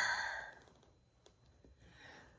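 The breathy tail of a woman's voice fading out within about half a second, then near silence.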